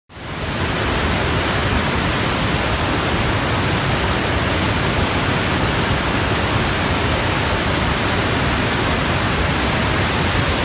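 Large waterfall at the Afqa grotto cascading over rock ledges: a steady, loud rush of falling water that fades in within the first second.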